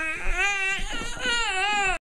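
Baby vocalizing in two drawn-out, whiny calls, each about a second long, with a short break between them. The second call is cut off abruptly near the end.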